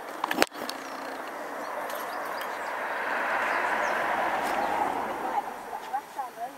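A vehicle passing by: a rushing noise that swells to its loudest a little past the middle and fades near the end. Two sharp clicks about half a second in, and faint bird chirps.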